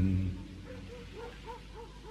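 Unaccompanied male voice singing a Turkish folk tune. The sung phrase and its low drone end shortly after the start, followed by a quiet stretch of short, soft notes that rise and fall in pitch until singing resumes at the end.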